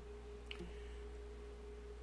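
A faint, steady single-pitched tone over a low hum, with one faint click about half a second in.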